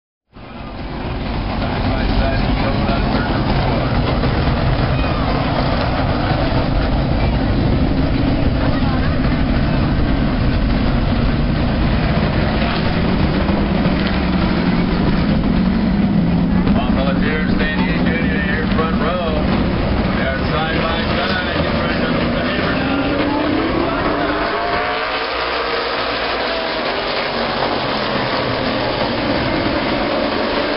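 A field of late model stock cars running around a short oval, their V8 engines loud and steady. Pitch rises and falls as cars pass, with a clear rising note in the last third as the pack accelerates.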